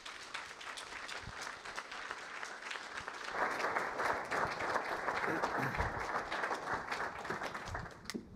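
Audience applauding, a dense patter of many hands clapping that grows louder about three and a half seconds in and stops abruptly near the end.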